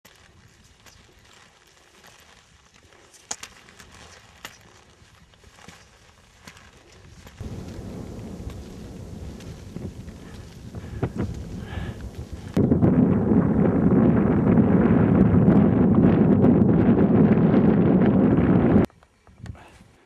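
Wind buffeting the camera microphone: a loud, even rumbling noise that sets in suddenly a little past halfway and cuts off just before the end. Before it, quieter stretches with scattered faint clicks of a skier's poles and skis on snow.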